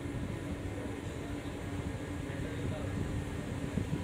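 Steady low hum of a small tour boat's motor underway, with a faint steady tone over it.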